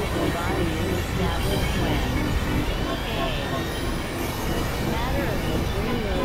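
Experimental electronic noise music: a dense, steady low rumbling drone with wavering, gliding tones drifting over it.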